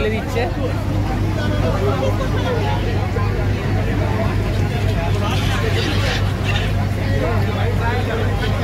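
Ferry engine droning steadily with a constant low hum, under the babble of many passengers' voices.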